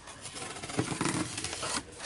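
Cardboard shipping box being opened by hand: tape and cardboard flaps scraping and rubbing as they are pulled apart, for about a second and a half.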